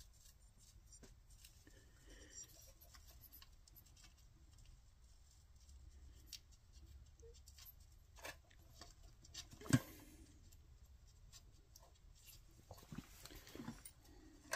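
Faint light clicks and taps of small metal engine parts being handled at the top of an open crankcase, with one sharper knock about ten seconds in.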